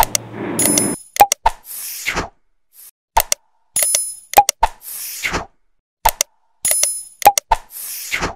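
Animated subscribe-button sound effects: sharp mouse-style clicks, a short bell-like ding and a quick whoosh. The set repeats three times, about three seconds apart.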